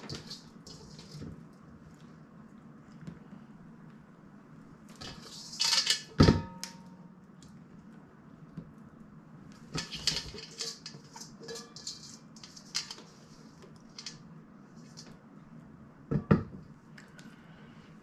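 Handfuls of salted shredded cabbage scooped from a stainless steel mixing bowl and packed into a glass mason jar: soft rustling and scraping, with a couple of louder knocks of the bowl or jar, the loudest near the end.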